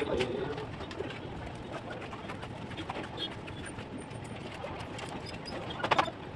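Pigeons cooing, with light taps and scrapes of masons' trowels on brick and mortar and a sharp knock at the very end.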